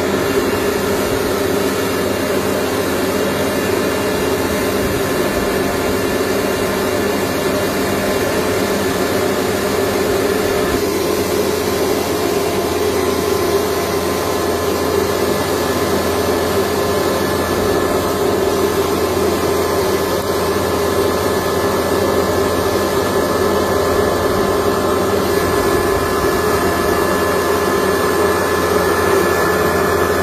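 Small household rice mill running steadily, milling rice as grain pours from its outlet chute. The machine noise is loud and even, with a thin steady whine over it.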